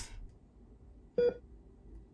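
Mostly quiet room tone, broken about a second in by one short electronic beep.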